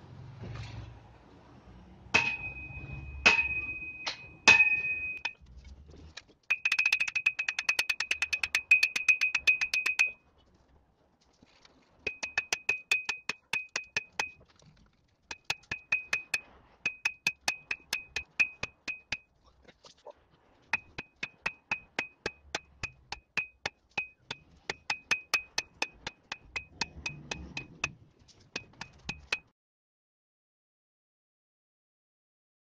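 Hammer blows driving a 50×50 mm steel angle into the ground as a vertical grounding electrode, each blow a ringing metallic clang. First four separate blows, then quick runs of strikes in bursts with short pauses between them.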